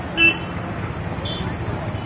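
Steady road-traffic rumble with a short, loud vehicle horn toot about a quarter second in, followed about a second later by a fainter, higher beep.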